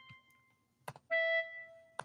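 MuseScore's playback of single notes as they are entered into the score. A held note fades out at the start, a soft click comes just before a second in, and then another short held note sounds.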